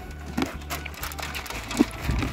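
A horse chewing dry shelled corn kernels and feed pellets, with a few irregular sharp crunches as the grain breaks between its teeth.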